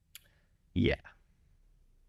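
A man's voice saying a single short word, with a brief faint click just before it; otherwise near silence.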